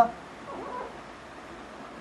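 Dry-erase marker writing faintly on a whiteboard, over quiet room noise. It comes just after the end of a drawn-out spoken syllable at the very start.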